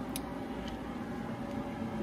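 Steady fan hum, likely the blower that keeps the inflatable paint booth inflated, with one light click just after the start.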